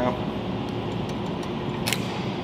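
Steady workshop background hum with a faint whine, and one sharp click near the end.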